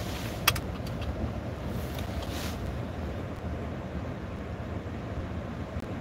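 Steady low rumble of a car heard from inside the cabin, with a sharp click about half a second in.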